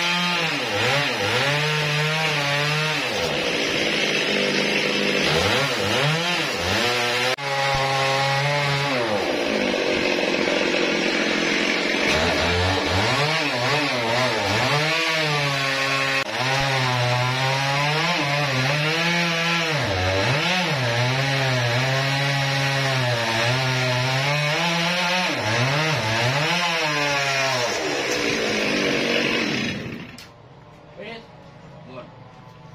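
Large chainsaw cutting into the end of a huge trembesi (rain tree) log. The engine's pitch drops and recovers several times as it bogs under load in the wood, and it stops just before the end.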